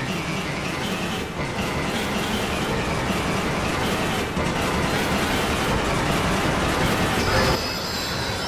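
A loud, dense jumble of several video soundtracks played over one another, making a steady wall of noise across all pitches with no clear voice or tune. It thins out suddenly near the end.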